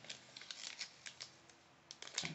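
Faint crinkling and clicking of a snack package of almonds being handled and turned over in the hands, mostly in the first second and a half, with one more click near the end.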